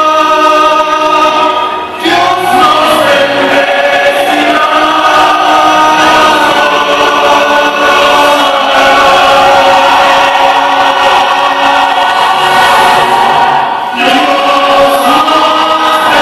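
A man singing a slow ballad solo into a microphone played through a PA speaker, holding long sustained notes, with short breaks about two seconds in and near the end.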